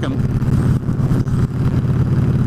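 Victory Jackpot motorcycle's V-twin engine running at a steady cruise, its exhaust pulses even and unchanging in pitch.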